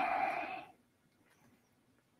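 A man's breathy, drawn-out vowel, voiced without clear pitch, that cuts off under a second in, followed by near silence.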